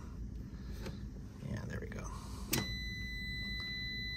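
Fieldpiece SC680 clamp meter's continuity beep: a click about two and a half seconds in, then a steady high tone that keeps sounding once the test leads make good contact. It signals a low resistance across the new contactor's contacts, a sign the contacts are good.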